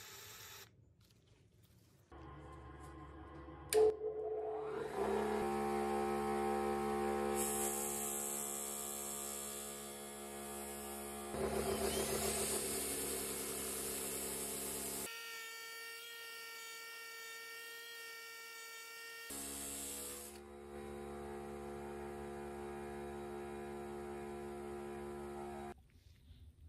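DeWalt bench grinder with buffing wheels running, its motor giving a steady hum with a whine of several tones. There is a sharp click about four seconds in, and a hissing rub while a metal part is pressed against the spinning buffing wheel, loudest around the middle. The sound stops abruptly just before the end.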